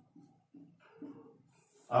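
A marker writing on a whiteboard: several short, faint squeaks and taps as small signs are written.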